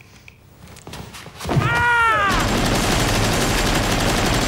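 Film soundtrack: a short shout with falling pitch about a second and a half in, then a long burst of rapid automatic gunfire.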